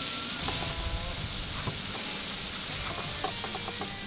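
Sliced mushrooms and onions sizzling steadily on a very hot cast-iron griddle, with a few faint knife taps on a wooden cutting board.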